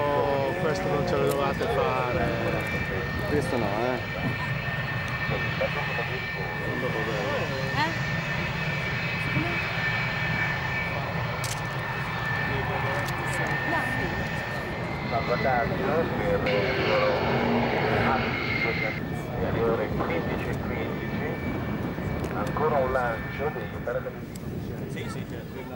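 Lockheed F-104 Starfighter jet engine running on the runway: a steady high whine over a low rumble. People's voices can be heard at the start and a few more times.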